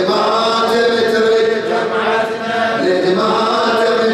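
Arabic devotional chanting of a jalwa, male voice in long, held melodic phrases.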